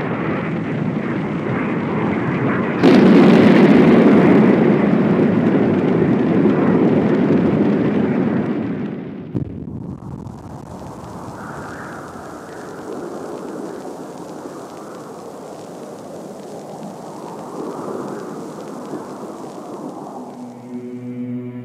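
The deep rumble of a large explosion. It surges suddenly louder about three seconds in, holds for several seconds, then settles into a lower, drawn-out rumble that swells and fades.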